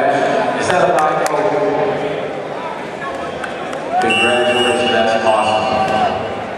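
Men's voices calling out and shouting, unintelligible, with one longer held call about four seconds in. A few sharp claps or knocks sound about a second in.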